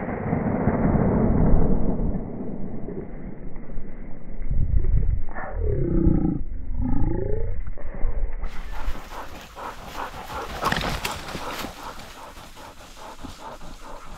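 Loud low rumbling noise on the microphone for most of the first eight seconds, with a few short wavering glides about six seconds in. Then many small crackles and snaps of dry brush and twigs being pushed through and handled, quieter.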